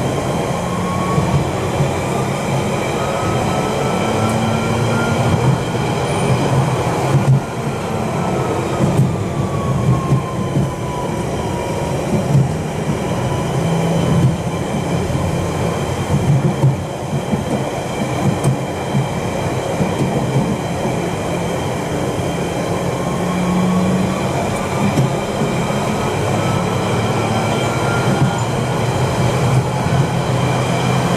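A London Underground 1992 Stock train running at speed, heard from inside the carriage: a steady rumble and rattle of wheels on the track. Over it a thin whine rises in pitch, falls back about ten seconds in, and climbs again near the end.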